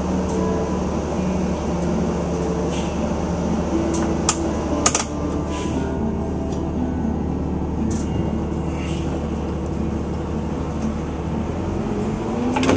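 Vehicle engine running at low speed, heard from inside the cabin as a steady low hum, with two sharp clicks about four to five seconds in.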